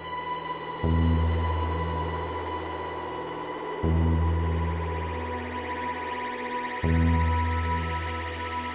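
Ambient electronic music from PS-3300 and Elka-X software synthesizers. A deep bass note starts suddenly and fades three times, about every three seconds, under a steady high tone.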